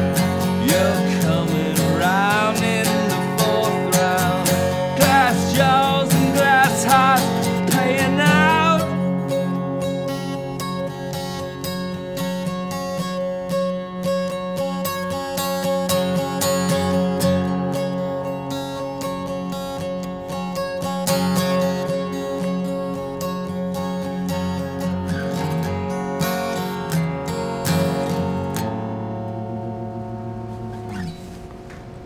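Acoustic guitar strummed and picked steadily through a song's instrumental ending, with a man's voice singing long, wavering notes over it for about the first nine seconds. The guitar then plays on alone and dies away on a final ringing chord near the end.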